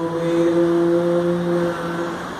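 A man's voice chanting one long note at a steady pitch, which stops near the end.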